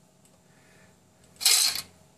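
LEGO Digital Designer's brick-placement sound effect playing through the computer's speakers: one short, loud, mostly high-pitched burst about one and a half seconds in.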